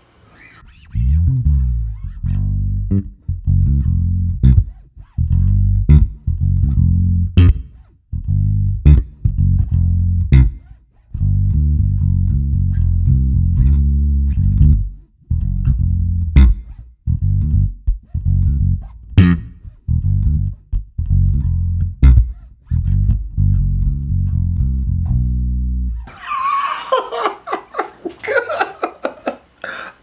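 Ibanez ATK810 electric bass played solo through an amp, pickup selector on the center position with the onboard bass EQ boosted: a run of deep plucked notes with sharp string attacks. About 26 seconds in the playing stops and a man laughs.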